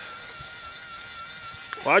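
Faint steady high-pitched whine from a battery-powered bubble machine running over quiet outdoor background, with a shouted voice starting just before the end.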